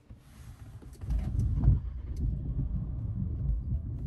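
The MG HS's 1.5 T-GDI turbocharged four-cylinder petrol engine starting. It catches about a second in and then runs steadily, quiet at start-up.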